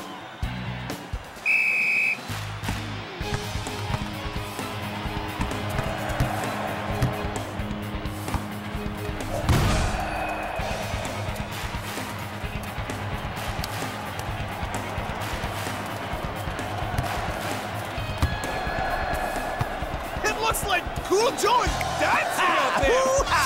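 A short, high referee's whistle blast about a second and a half in. After it comes background music with a steady beat, with one sharp hit about halfway through.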